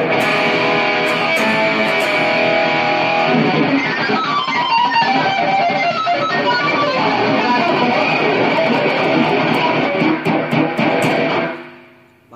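Artrock electric guitar with a Floyd Rose tremolo played loud through distortion: a fast lead solo that opens on held notes, breaks into quick descending runs a few seconds in, and fades out just before the end.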